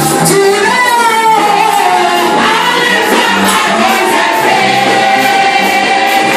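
Live gospel praise and worship music: a group of women singing into microphones, a lead voice over a choir, with a bass line and a steady beat of about two strokes a second.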